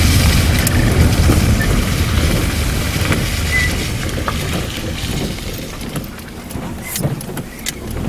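Inside a moving car: a steady low rumble of engine and road noise that eases off and grows quieter over the second half, with a few sharp clicks near the end.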